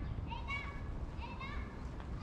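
Several short, high-pitched children's voices calling out in the distance, over a low steady rumble.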